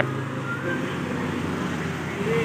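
Motorcycles passing along the road, a steady engine and road noise.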